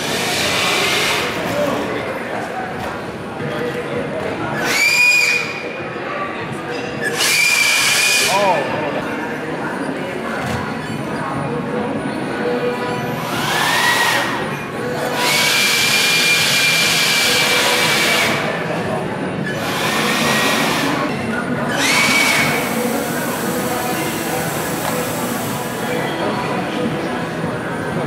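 A competition robot's small electric motor whining in about seven bursts, some lasting several seconds. Each burst sweeps up in pitch as it spins up, with a rush of air over a steady background of hall chatter.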